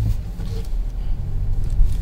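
Low, steady engine and tyre rumble of a Kia Seltos heard from inside the cabin as the SUV is manoeuvred slowly in reverse.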